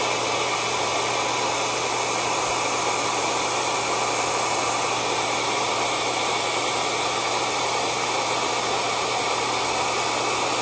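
Hand-held hair dryer running steadily, blowing onto a fabric seat seam at close range: a constant rush of air over a low motor hum.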